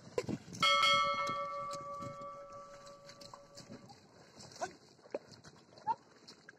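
A bell struck once, a clear metallic ring that starts suddenly and fades away over about three seconds.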